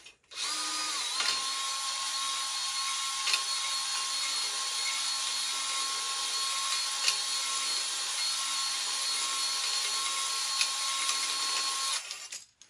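Cordless drill spinning a cylinder hone at medium speed inside an oil-lubricated engine cylinder bore, the hone's stones scraping the wall to lay a crosshatch. A steady motor whine over a scraping hiss settles to a slightly lower pitch about a second in, with a few faint clicks, and stops at the very end.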